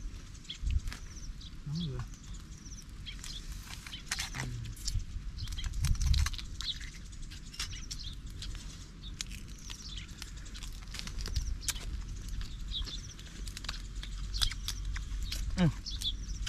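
Irregular sharp clicks and cracks of grilled mantis shrimp shells being broken open and peeled by hand, over a steady low rumble with a few faint high chirps.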